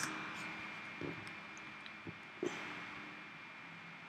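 Quiet room tone with a faint steady hum, broken by a sharp computer key click at the start and a few soft clicks of keys or a mouse about one, two and two and a half seconds in.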